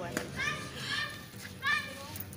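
Distant high-pitched voices calling out in the background, two short calls.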